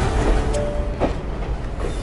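Passenger train at a station, a dense low rumble with rail clatter and a single sharp knock about a second in.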